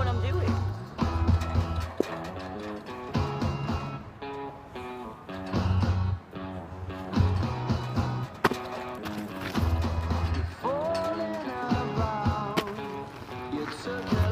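Recorded pop song with a steady, repeating bass line and a sung vocal line.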